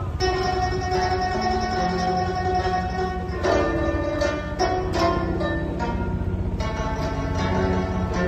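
Guzheng (Chinese zither) playing a solo. Long held, ringing notes fill the first few seconds, then a run of freshly plucked notes follows from about three and a half seconds in.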